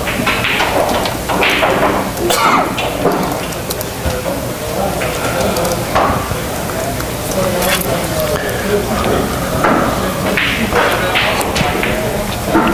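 Background voices and room noise of a busy billiard hall, with a few short sharp clicks.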